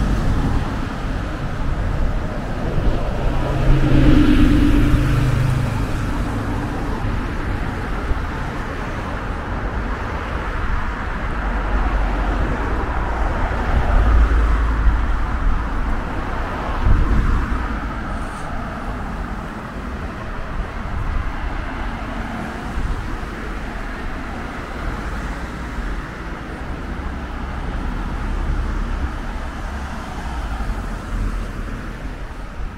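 Road traffic on a town street: cars and a van passing close by, over a steady background of traffic noise. A passing vehicle's engine hum is loudest about four seconds in.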